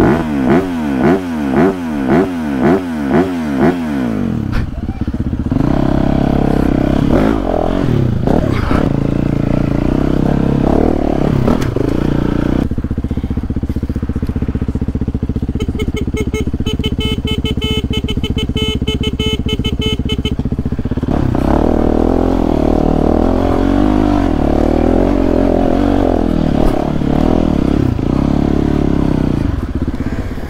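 Dirt bike engine revved in a quick series of about seven rising-and-falling throttle blips, then pulling along at changing revs. It holds a steady note for several seconds midway before varying again.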